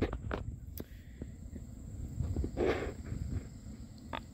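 Close handling noise with a few small clicks over a low rumble, and one short breath-like rush of noise near the middle. The chainsaw is not running.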